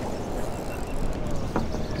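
Steady wind and ocean surf noise, with wind on the microphone. There are no distinct events.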